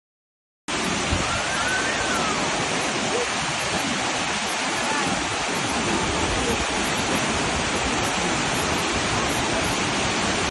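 Waterfall cascading over rock steps: a loud, steady rush of falling water that starts abruptly about a second in.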